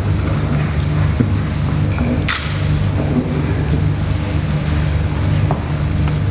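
A steady, loud low rumble with no speech, and one brief hiss about two seconds in.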